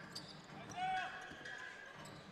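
Faint basketball game sound on a hardwood court: a ball bouncing as it is dribbled, with a short high-pitched sound about a second in.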